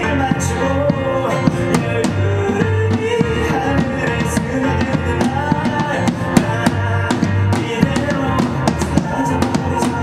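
Live band music: a male voice singing over a keyboard, bass guitar and a drum kit keeping a steady beat.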